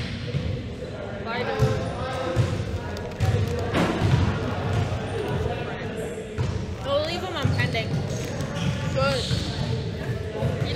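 Basketballs being dribbled on a gym floor: a steady run of dull thuds, about two a second, under background chatter.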